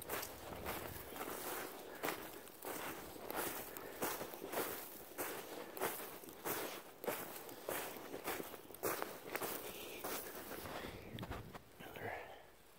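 Footsteps crunching through snow at a steady walking pace, about two steps a second, stopping near the end.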